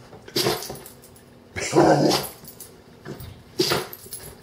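Pit bull-type dog barking three times, short, longer, short, in answer to being asked to wait for her treats: an impatient demand for the treat.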